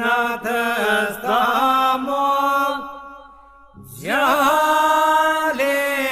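Albanian men's iso-polyphonic folk singing: a lead voice sings an ornamented, wavering melody over a steady drone (iso) held by the other men. A little before halfway the singing fades out for about a second, then a voice slides up in pitch and the song resumes at full level.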